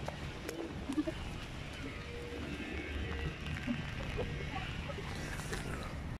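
Faint outdoor ambience: a low, steady rumble with scattered faint, short distant sounds and a few light clicks.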